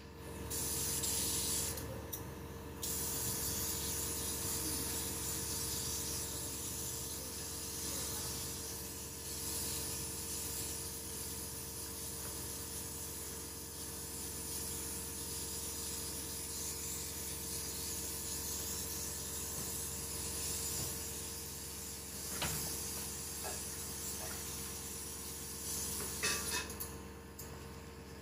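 A steady hiss that starts just after the beginning and thins briefly about two seconds in, with a few faint clicks near the end.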